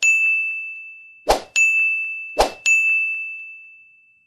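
Animated-button sound effects: three bright dings, each just after a short sharp click, one for each of the Like, Share and Comment buttons popping up. Each ding rings on and fades away over about a second.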